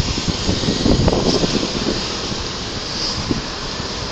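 Steady street traffic noise with a rough low rumble, louder for about a second near the start.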